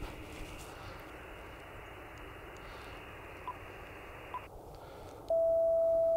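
Icom IC-705 transceiver: receiver hiss from its speaker, which narrows suddenly after about four and a half seconds. About five seconds in, a steady CW sidetone beep starts and lasts about a second and a half as the radio keys a carrier on 12 meters to read the antenna's SWR.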